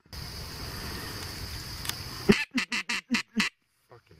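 A quick run of about six duck quacks starting a little over two seconds in, the first one the loudest, over a steady background hiss. The run is typical of hunters calling to circling ducks.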